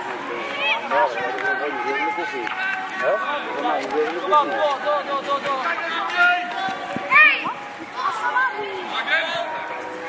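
Many voices shouting and calling over one another on a football pitch, with one loud high shout about seven seconds in.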